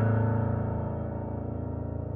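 Prepared piano and live electronics: a loud, low chord struck just before ringing on and slowly fading, over a fast, steady pulsing texture.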